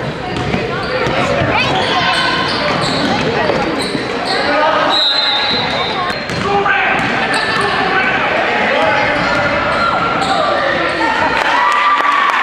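Basketball game in a gym: the ball bouncing on the hardwood floor and voices of players and spectators echoing in the hall. A short, high referee's whistle about five seconds in.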